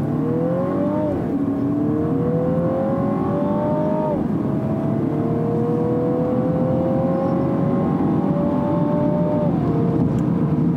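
2018 Mini Clubman John Cooper Works' turbocharged four-cylinder engine, heard from inside the cabin, accelerating through the gears of its eight-speed automatic. The engine note climbs steadily and drops sharply at each upshift: about a second in, about four seconds in, and near the end. A steady rush of road noise runs under it.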